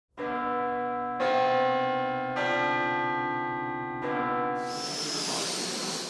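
Church bells ringing four strokes on different notes, each stroke a second or so after the last, every note ringing on and overlapping the next. A hiss rises over the ringing near the end.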